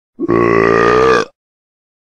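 A single long, low burp lasting about a second, right after a gulp of sweet jelly drink.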